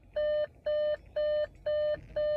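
Car's electronic warning chime beeping steadily, about two short, identical beeps a second, four in all.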